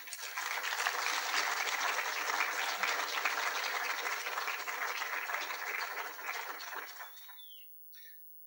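Audience applauding, swelling quickly at the start, holding steady, then dying away about a second before the end.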